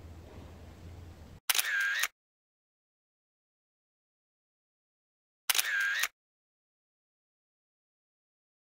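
Two camera-shutter sounds, each about half a second long and about four seconds apart, with dead silence between them. Just before the first, a faint outdoor background cuts off suddenly.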